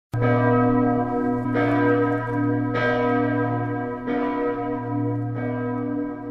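Large church bell tolling, struck five times about every 1.3 seconds, each strike ringing on with a deep hum that carries through to the next.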